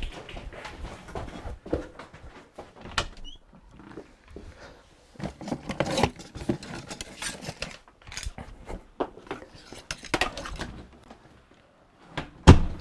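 Rummaging for a handheld PAR meter: scattered knocks, clicks and clatter of objects being moved and handled, with a short quiet gap just before the end.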